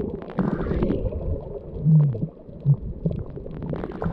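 Muffled underwater rumble and sloshing of water moving against a camera held just below the sea surface, with irregular knocks and crackles. A short low hum stands out about halfway through, and a shorter one follows.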